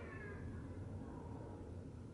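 The closing sound of a K-pop music video played back through speakers: a faint pitched tone that falls and fades away over about a second as the song ends, leaving a low hum.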